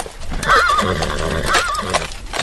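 A horse whinnying twice, each call with a wavering, shaky pitch, about half a second and a second and a half in.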